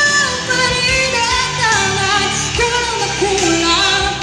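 Female singer singing a Filipino pop song live into a microphone over instrumental accompaniment, heard through the stage's PA speakers.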